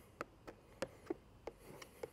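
Faint, scattered clicks and light rubbing from a plastic squeegee pressing wet paint protection film down onto a car's mirror cap.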